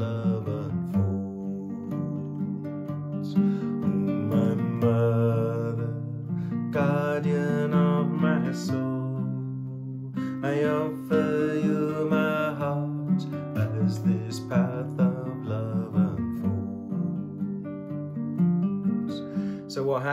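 A man singing a slow, melodic devotional song to his own strummed acoustic guitar, with the voice coming in phrases and the guitar chords carrying on between them.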